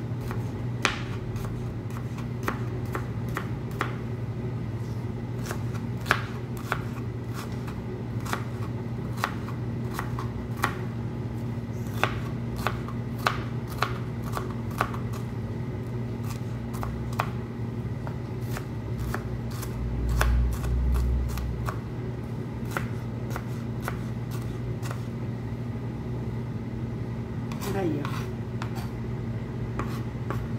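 Kitchen knife dicing an onion on a plastic cutting board: irregular taps of the blade striking the board, a few each second, over a steady low hum.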